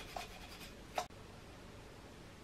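Toothbrush bristles scrubbing lint and dust out of the metal hook area of a Singer 66 sewing machine. It makes short scratchy strokes, the loudest about a second in, then stops abruptly and leaves a faint hiss.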